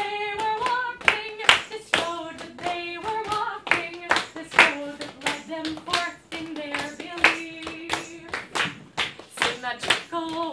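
A woman singing a folk song live, with the audience clapping along in a quick, steady rhythm under her held melodic notes.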